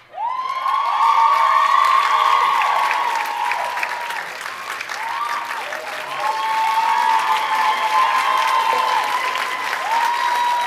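Live theatre audience breaking into applause at the start, with many high whoops and cheers gliding up and down over the clapping.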